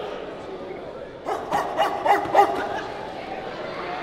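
Men barking like dogs, the Omega Psi Phi fraternity's "Que" bark: a quick run of four or five short, sharp barks about a second in, over crowd chatter.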